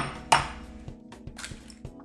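A hen's egg cracked once sharply on the rim of a bowl about a third of a second in, followed by a few faint clicks of shell as it is pulled apart. Faint background music runs underneath.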